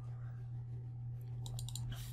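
A computer mouse double-clicking to open a file: a quick cluster of sharp clicks about a second and a half in, over a steady low electrical hum.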